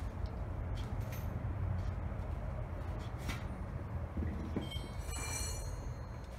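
Wrench turning the forcing bolt of a bearing puller pressing on a front wheel hub, with a few sharp clicks of steel on steel and a brief high metallic squeal near the end as the bolt loads up, over a steady low hum.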